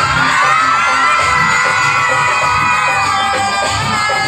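A crowd of children shouting and cheering, many voices at once, over loud dance music.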